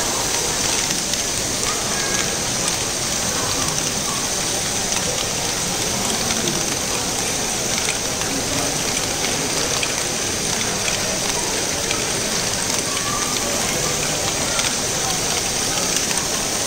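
LEGO Great Ball Contraption modules running: a steady, dense clatter of many small plastic balls rolling and dropping through motorised LEGO lifts and chutes.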